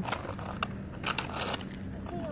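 Roller-skate wheels and boots scuffing and clicking on asphalt as a child shifts about and draws her feet up. A few small scrapes and clicks come over a faint steady hum.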